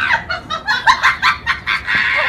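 Fowl clucking: a rapid run of short clucks, several a second, with a longer held call beginning right at the end.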